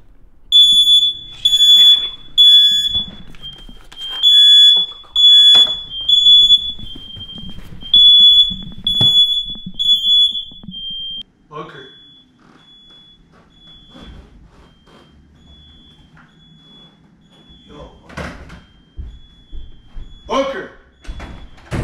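Smoke alarm sounding: loud, high-pitched beeping in bursts, set off by smoke from paper burned under it with a lighter. About eleven seconds in, the beeping suddenly becomes much fainter but keeps going.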